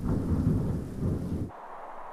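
Rumbling thunder with a rain-like hiss, cut off abruptly about a second and a half in.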